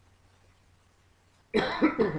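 A man coughs loudly about one and a half seconds in.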